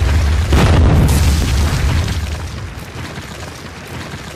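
Explosion-and-crumbling sound effect of a wall being blasted apart: a deep booming rumble with a fresh burst of breaking debris about half a second in, then fading away over the last couple of seconds.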